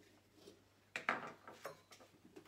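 Faint handling sounds of a small pumpkin-carving tool cutting into a pumpkin: a short scrape about a second in, then a couple of softer ones near the end.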